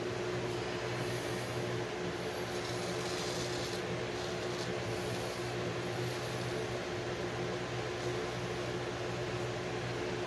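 Steady mechanical ventilation hum with constant low tones, and a few faint high rasps as a straight razor passes over lathered stubble.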